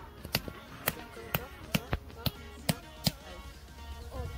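A hammer striking a metal tent peg to drive it into the ground: sharp knocks about two or three a second, with music playing underneath.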